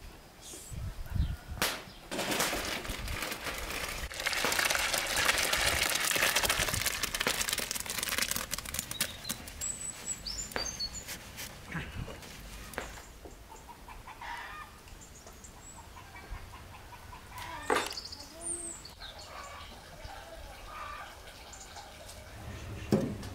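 Kiwi jam poured from a large metal basin into a second metal basin: a rushing, splashing pour lasting several seconds, after a single metal knock. Later, chickens clucking and small birds chirping in short, falling calls.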